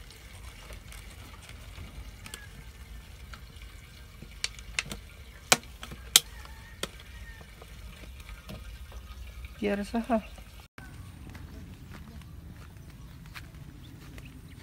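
Liquid poured from a large plastic jug into a small plastic bottle: a faint trickle as the bottle fills, with a few sharp plastic clicks in the middle.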